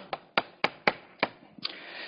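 Chalk tapping against a chalkboard: about six sharp, separate taps in the first second and a half, then a brief scratchy stroke near the end.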